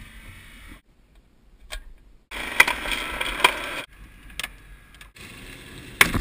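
Short cut-together passages of a hydraulic rescue combitool working on a car body: a steady mechanical noise with a few sharp clicks, broken by a moment of near silence.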